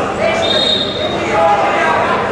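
Sports-hall sound of a wrestling bout: voices calling out and dull thuds from the wrestlers on the mat. A short, high, steady tone sounds about half a second in and lasts under a second.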